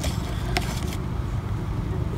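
A steady low rumble with a single faint click about half a second in.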